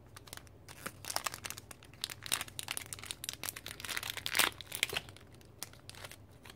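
Small plastic craft-packaging bag crinkling and crackling as it is unsealed and opened by hand: a run of irregular rustles and crackles.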